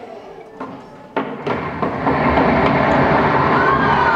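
A loud rumbling stage sound effect starts suddenly about a second in and keeps on, with children shouting over it near the end.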